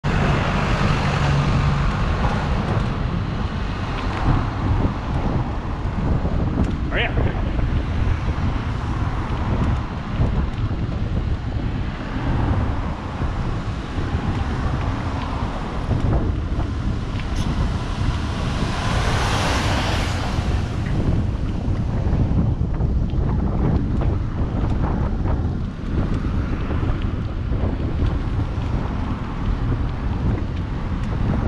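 Wind buffeting the microphone of a bicycle-mounted action camera while riding, over a steady low rumble of road and traffic noise. The noise swells louder about two-thirds of the way through.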